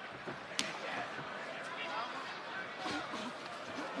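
Arena crowd noise with scattered shouts around a cage fight, broken by two sharp smacks, about half a second in and again near three seconds.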